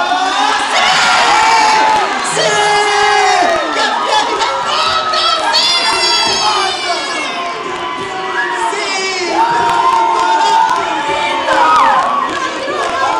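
A group of high voices shouting and cheering together, loud and excited, celebrating a goal.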